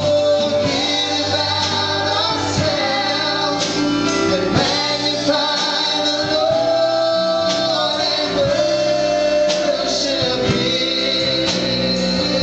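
Live gospel worship music: male and female voices singing together over keyboard and guitar.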